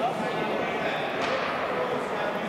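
Indistinct chatter of several voices in a large hall, steady throughout.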